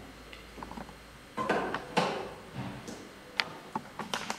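Handling noises: a short rustle about a second and a half in, then a few sharp separate clicks, as a plastic handpiece and machine are moved by hand.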